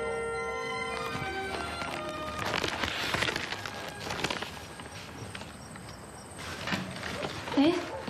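Soft background music that ends about a second in, followed by a few seconds of irregular knocks and rustling. A woman's short exclamation comes near the end.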